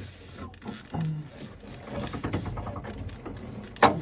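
The electric drive of a T-80BVM's autoloader carousel running as it turns the rounds round, with a sharp clunk near the end.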